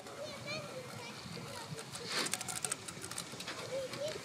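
Feet scuffing and scraping through loose sand as a small playground merry-go-round is pushed round, with a run of gritty scrapes about two seconds in, under faint voices.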